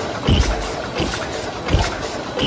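DEBAO-1250C high-speed paper cup forming machine running: a steady mechanical clatter with three evenly spaced low thumps, one about every three quarters of a second.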